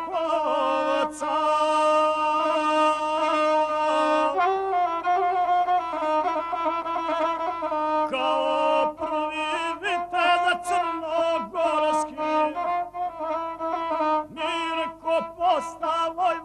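Gusle, the single-string bowed folk fiddle, playing a wavering melody under a man's chanted epic singing. The line is held steadily for the first few seconds and breaks into shorter sung phrases in the second half.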